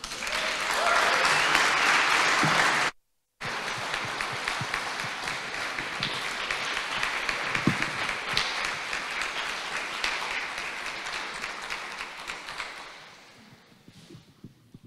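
Audience applauding at the end of a performance, loudest in the first three seconds, then steady and fading away near the end. The sound cuts out completely for a moment about three seconds in.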